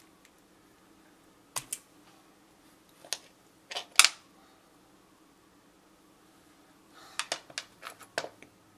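Scattered sharp clicks and taps from handling sculpting tools and a small clay horse on its wire armature at a wooden work table: a pair a second and a half in, the loudest cluster around four seconds, and a quick run of clicks near the end.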